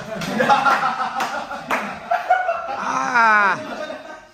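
A group of people laughing, with a few sharp hand claps in the first two seconds, then a drawn-out "aah" that falls in pitch near the end.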